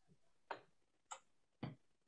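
Near silence broken by three faint short clicks, roughly half a second apart.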